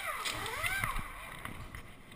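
Pneumatic impact wrench spinning lug nuts on a stock car's wheel during a pit-stop tire change: its whine sweeps up and down in pitch during the first second, among knocks of the wheel work.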